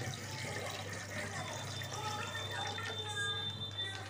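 Milk pouring in a thin stream from a packet into an aluminium kadhai, a steady trickling fill.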